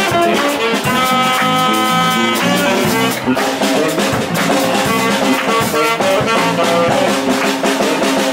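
Street jazz band playing live: saxophone and trombone over a drum kit and electric bass guitar. A horn holds one long note from about a second in until about two and a half seconds.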